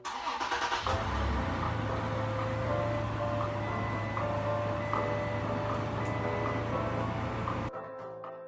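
A vehicle engine is cranked and catches within about a second, then runs steadily. It cuts off suddenly shortly before the end, under sustained music.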